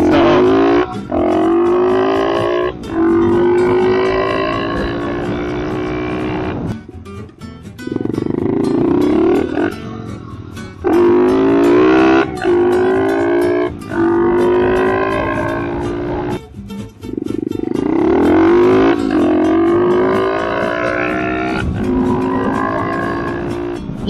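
SSR 110cc four-stroke pit bike engine accelerating up through the gears: the pitch climbs over a second or two, drops at each shift, and climbs again. It comes off the throttle briefly three times.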